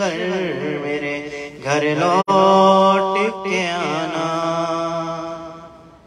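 A man's solo voice singing a slow Urdu noha (a Muharram lament) into a microphone. He draws out long held notes with ornamented turns, dips briefly about a second and a half in, and fades near the end.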